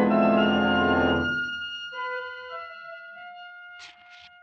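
Organ music bridge marking a scene change in a radio drama: a full held chord that fades away after about a second, followed by a few quiet sustained single notes.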